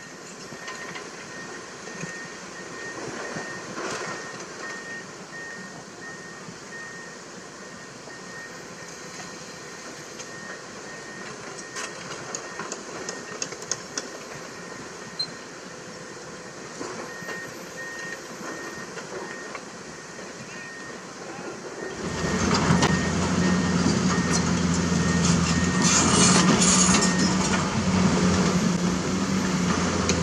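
Komatsu PC200 hydraulic excavator at work in rocky ground: engine running, with rocks clattering and scattered knocks from the bucket. A repeated high beep comes and goes. About two-thirds of the way through the sound turns suddenly much louder and closer, a steady low engine drone with dense clanking of rocks and steel tracks.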